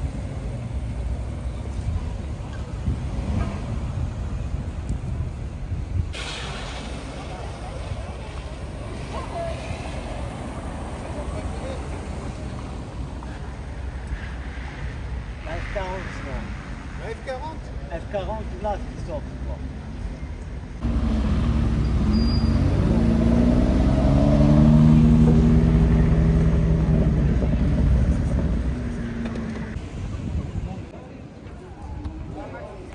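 Low car and street rumble with scattered voices as a car pulls away at low speed. About two-thirds in, a louder car engine suddenly comes in, its note rising and then holding steady.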